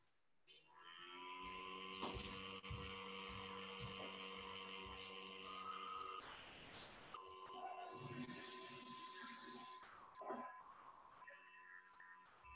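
Faint music of sustained, steady tones held at several pitches, with a short noisy break about halfway through before the tones resume.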